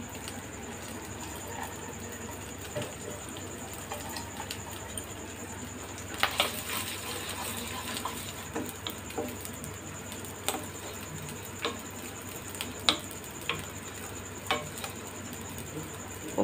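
Wet soaked rice frying in ghee in a nonstick pan, stirred with a wooden spatula: a steady light sizzle with occasional sharp knocks of the spatula against the pan, most of them from about six seconds in.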